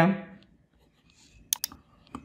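Two sharp clicks in quick succession about a second and a half in, after a man's voice trails off at the very start.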